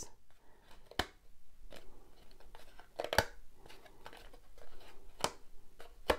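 Embroidery floss being pulled out of the slits of a cardboard friendship-bracelet loom by hand: soft rustling of thread on cardboard, with three sharp clicks about two seconds apart as strands snap free of the slots.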